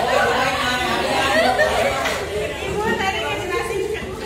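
Several people talking at once: overlapping classroom chatter that echoes slightly in the room.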